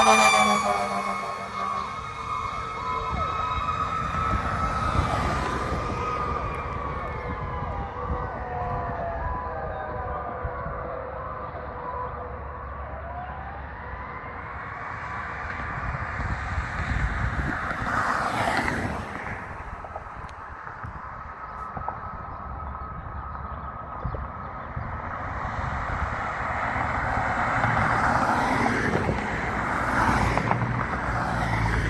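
Fire engine siren wailing as the truck passes, loud at the very start and then fading as it moves away, its wail still falling and rising in the distance. Two cars pass by, one around the middle and one near the end.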